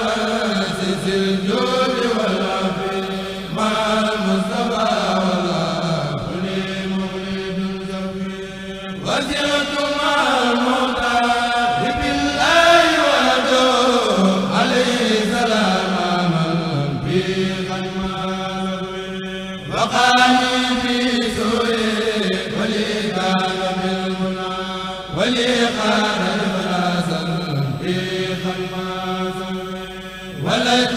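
Voices chanting an Arabic devotional poem in praise of the Prophet Muhammad (qasida chanting), sung in long drawn-out phrases of a few seconds each over a steady held low note.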